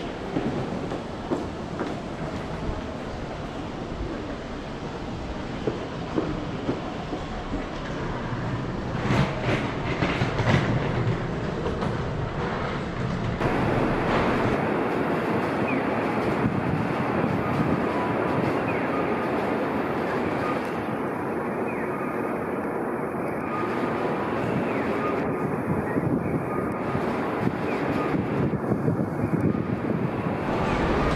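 Continuous urban background noise with no clear single source: a steady rumble and hiss. The sound changes character abruptly about thirteen seconds in.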